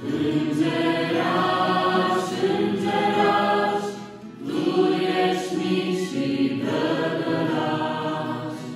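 Mixed youth choir of young men and women singing a Romanian Christian song in unison phrases, with acoustic guitar accompaniment. The singing breaks off briefly about halfway through, then a new phrase starts.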